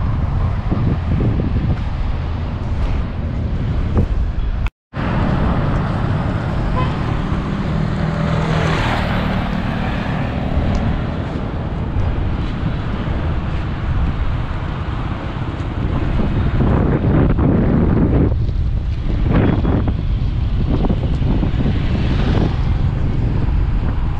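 Wind buffeting the microphone over steady road traffic noise. One or two louder passing-vehicle swells, and a momentary drop-out about five seconds in.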